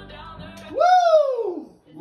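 Playback of layered recorded vocal harmonies through studio monitor speakers, cut off under a second in; then a single loud voice lets out one long sliding vocal glide that rises and then falls in pitch.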